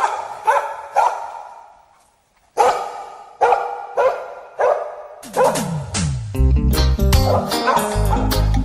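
Dog barking, a string of barks about half a second apart with a short pause after the first three. About five seconds in, a reggae band comes in with bass and guitar.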